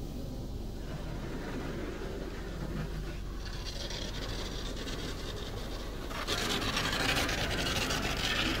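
Futura SSA touchless car wash spraying the car, heard from inside the cabin: a steady hiss of water on the roof and glass. It grows louder about six seconds in as blue foam is sprayed across the windshield.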